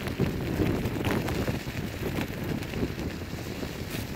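Kick scooter tyres rolling over a wet gravel road with a steady crunch and crackle, with wind buffeting the microphone.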